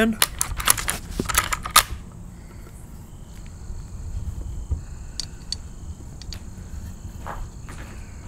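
A .444 Marlin lever-action rifle being loaded with a single cartridge: a quick run of sharp metallic clicks in the first two seconds, then a few fainter clicks later on.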